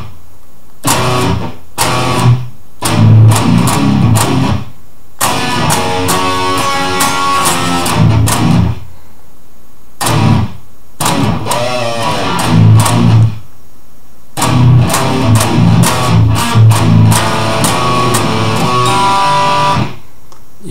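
Electric guitar in standard tuning through heavy distortion playing a stop-start metal riff. Low chugged notes are broken by short silences, and about halfway through come a few higher held notes that waver.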